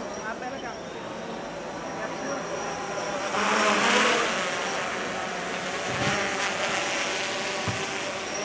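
Voices of a walking crowd in a street, with a motor vehicle passing close by: its noise swells to a peak about four seconds in and then fades.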